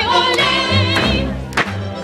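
A group of voices singing over low instrumental accompaniment. The singing stops just after a second in, leaving the low accompaniment notes, with a single knock about a second and a half in.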